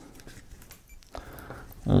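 Faint handling noise: soft rubbing and a couple of small clicks as the dive computer is worked out of its soft rubber wrist strap.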